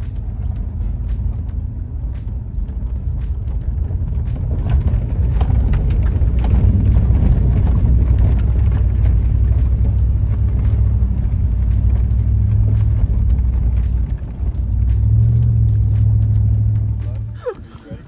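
Car cabin noise while driving a rough dirt road: a steady low engine and road rumble that changes pitch with speed, with frequent knocks and rattles from the bumps. It drops away suddenly near the end.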